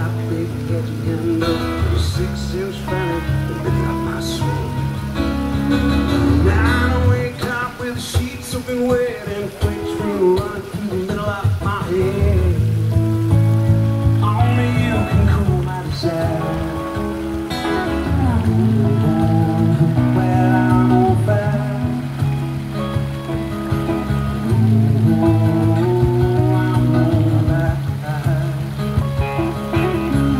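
Live music from a man singing and playing acoustic guitar through a PA, with sustained low bass notes under a wavering vocal melody. Splashing water from a fountain runs faintly underneath.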